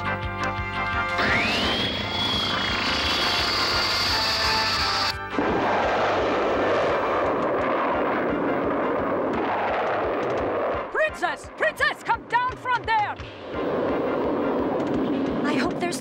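Cartoon sci-fi sound effects: a rising electronic whine that cuts off suddenly, then a steady jet-like rumble of a flying machine. Wavering voice-like cries break in around eleven seconds in.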